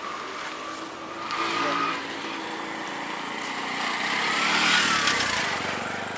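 Road traffic close by. An engine runs and pulls away in the first couple of seconds, then a vehicle passes close, growing to its loudest about five seconds in, its pitch dropping as it goes by, and fading.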